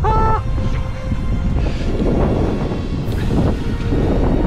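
Wind buffeting the camera microphone as a steady low rumble, under quiet background music.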